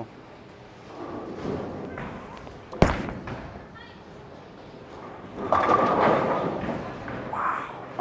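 A Storm Night Road bowling ball lands on the wooden lane with a sharp thud about three seconds in, the loudest sound here, rolls quietly down the lane, then hits the pins about two and a half seconds later with a clatter of pins lasting a second or so, echoing in the hall.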